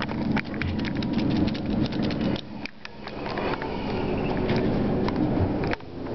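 Dense crackling and rustling handling noise from a handheld camera being moved around, over a steady low hum inside the elevator car.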